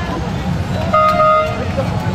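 A car horn honks once, a short steady note lasting about half a second, about a second in, over a steady low rumble.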